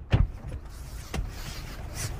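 Thumps and rustling inside a car as a person climbs onto the seat: a sharp thump just after the start and a lighter knock about a second later, over a low steady cabin rumble.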